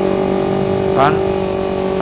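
Yamaha MT-25's parallel-twin engine running at a steady cruise, its hum holding one even pitch without revving up or down.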